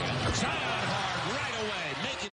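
Basketball game in an arena: a single sharp thud of the ball about a third of a second in, over steady crowd noise.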